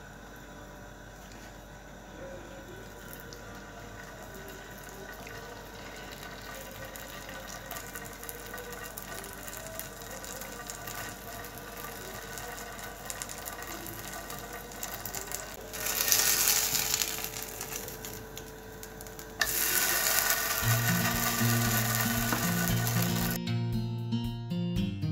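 Hot oil sizzling in a nonstick frying pan as small spoonfuls of batter fry in it. The sizzle is low and steady at first, flares up loudly for about a second some sixteen seconds in, and turns loud again from about twenty seconds on.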